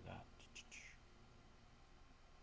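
A soft-spoken man's voice trailing off after a word or two, with a breathy whisper-like sound, then near silence with faint room tone.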